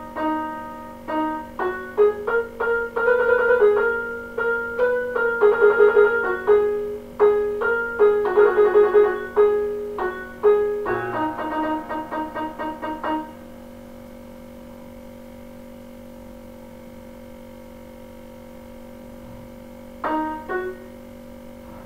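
Electronic keyboard playing a melody one note at a time, with quick repeated notes in places. About thirteen seconds in the notes stop, leaving only a steady tone that has been running underneath all along.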